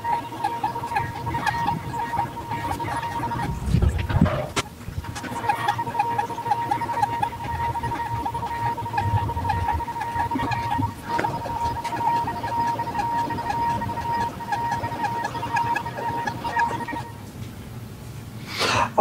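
Swiitol E6 Pro diode laser engraver's stepper motors whining steadily as the laser head rasters back and forth over wood while engraving a photo, with a fast, regular pulsing as the head reverses. The whine breaks off briefly around a low thump about four seconds in, and stops shortly before the end.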